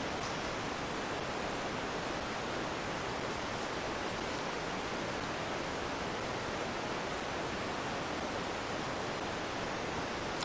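A steady, even hiss of background noise, with no other sound standing out.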